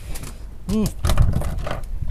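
A large eeltail catfish (sembilang) being swung aboard on a hand line and flopping on the boat's deck: a run of irregular light taps and knocks, over a low steady rumble.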